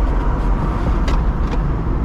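Steady low rumble of a car's running engine and cabin, heard from inside the car, with a single short click about a second in.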